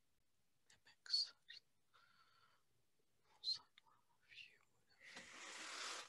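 Faint whispering through a video-call microphone: a few soft hisses, then a longer rush of noise near the end that grows louder.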